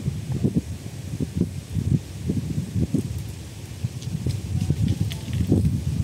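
Wind buffeting the microphone outdoors: an irregular low rumble in uneven gusts.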